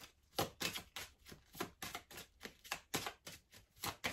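Tarot cards being shuffled by hand: a quick, even run of soft card taps and clicks, about four or five a second.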